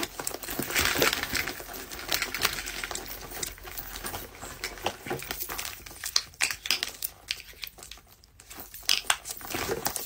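Rummaging through a fabric makeup pouch: crinkling and many small clicks and taps as items are picked out and set on the desk, then a lotion tube handled and hands rubbed together. It is quieter for a moment a little after the middle.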